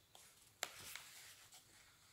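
Near silence with faint paper rustling from a book being handled, and one sharp click a little over half a second in.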